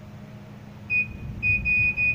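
Digital multimeter beeping in continuity mode as its probe touches a capacitor pad on a phone circuit board: a short high beep about a second in, then a longer, slightly broken beep from about halfway through. The beep marks a pad that connects through to ground (negative).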